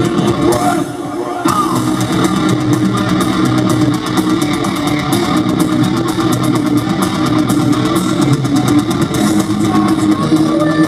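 Heavy metal band playing live, loud: electric guitars, bass guitar and drums, with a brief drop in the full sound about a second in.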